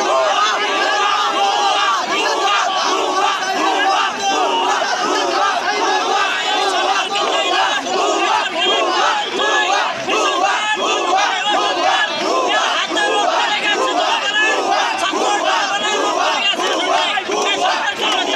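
A large crowd of protesting men shouting together, many raised voices overlapping without a break.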